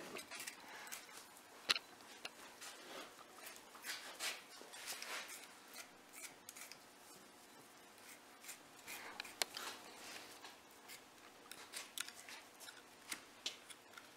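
A carpenter's utility knife blade slicing and scraping through deer hide around the antler bases in faint, intermittent strokes, with a sharp click just under two seconds in.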